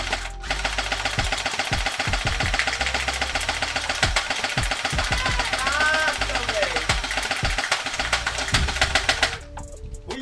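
Airsoft M4 rifle firing one long full-auto burst: a fast, even rattle of shots, like a sewing machine, that cuts off abruptly near the end.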